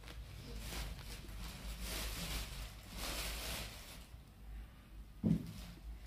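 Thin plastic carrier bags rustling and crinkling as they are handled, uneven and crackly for about four seconds, then quieter. A brief low sound comes near the end.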